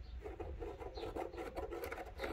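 Marker tip rubbing and squeaking along a plastic tail-light lens as a cutting line is drawn, in fine rapid strokes starting shortly after the start.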